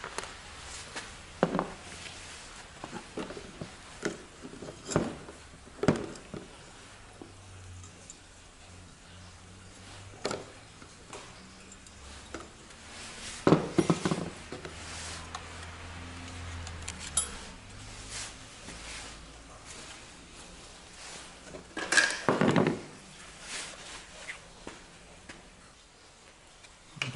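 Scattered clicks and knocks of hard plastic car-mirror parts and hand tools being handled and set down on a plastic tool-cart tray, with a few louder clatters of parts being moved.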